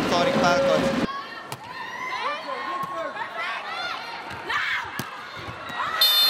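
Loud arena noise cuts away about a second in to live volleyball court sound: sneakers squeaking on the indoor court and a few sharp ball strikes, with the crowd behind.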